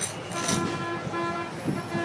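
A horn sounding three short toots in quick succession over the noise of a busy port street.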